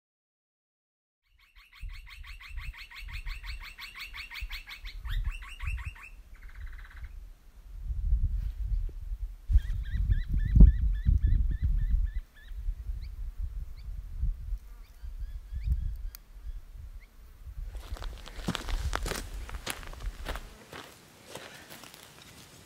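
Birds calling, first a rapid repeated trill of high notes for a few seconds, then scattered chirps, over gusty wind buffeting the microphone. Near the end comes a run of sharp clicks and crackles.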